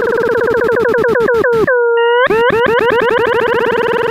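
Desmos graphing calculator's audio trace playing the graph of tan(x²) as sound: an electronic tone whose pitch follows the curve. It sweeps up and down many times a second, breaking at each asymptote. About halfway through the sweeps slow to a short, nearly steady low tone as the trace crosses the smooth dip at x = 0, then speed up again.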